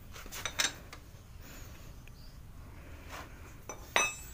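Steel wrenches clinking together as they are handled. A few light clinks come about half a second in, then a sharper metallic clink with a short ring near the end.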